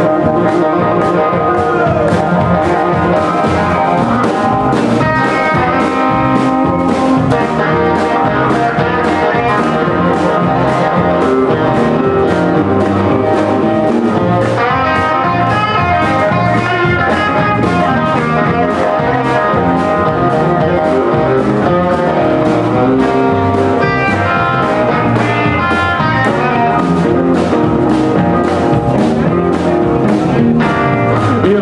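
Live blues band in an instrumental passage: lead electric guitar playing with bent notes over electric bass and a steady drum-kit beat.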